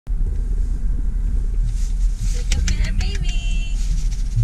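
Steady low rumble of a car's engine and road noise heard inside the cabin. About two and a half seconds in there are a few sharp clicks and a brief high-pitched voice.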